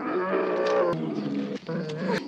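A brown bear's long, drawn-out roar that breaks off briefly about one and a half seconds in, then starts again.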